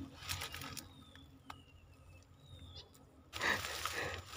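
Faint, thin, high-pitched animal calls, four or five short whistles that each fall in pitch, with a single click about one and a half seconds in. A louder rustling noise starts near the end.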